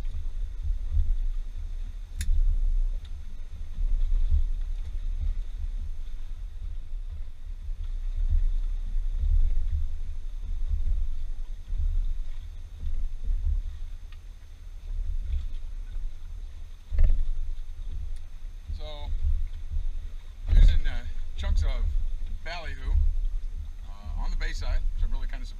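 Wind buffeting the boat-mounted camera's microphone: a low rumble that rises and falls in gusts. A man's voice is heard briefly in the last few seconds.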